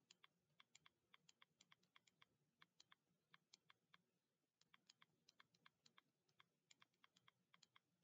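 Faint typing on a computer keyboard: irregular runs of quick key clicks, several a second, with a short pause about four seconds in.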